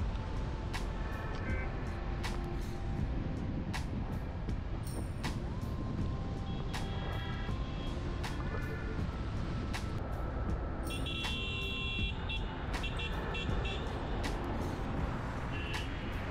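Car driving along a highway with steady low road and engine rumble. Other vehicles toot their horns now and then, with a run of short high-pitched toots about two thirds of the way through.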